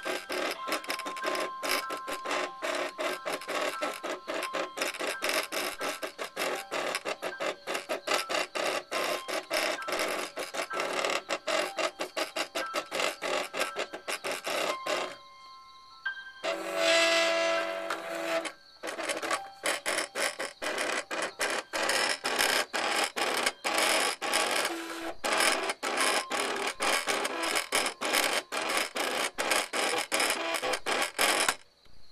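A Cricut cutting machine drawing with a pen instead of a blade. Its carriage and roller motors run in a dense stutter of rapid, short moves as the pen traces the design. Just past halfway there is a brief pause, then a longer, steadier motor whine for a second or two, and then the stutter resumes.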